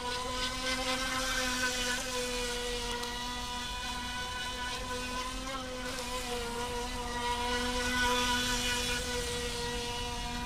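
FT009 RC speedboat's brushless electric motor running with a steady high-pitched whine as the boat circles on the water, growing louder for a moment about eight seconds in.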